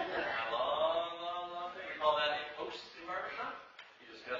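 Men's voices from a barbershop quartet, intoning held notes between shorter voiced phrases, dying away near the end.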